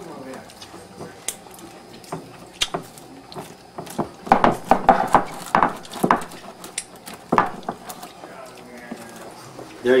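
A hand pressing sticky marshmallow-coated rice cereal down into a glass baking dish: irregular crackles and soft knocks, thickest in a cluster about four to six seconds in.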